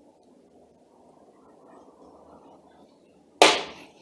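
Quiet room tone, then about three and a half seconds in a single short, sharp clatter that fades within half a second: a steel motor through-bolt, its nut threaded back on, set down on the work table.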